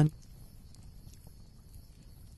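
A man's spoken voice ending right at the start, then a faint steady background hiss with a few soft ticks.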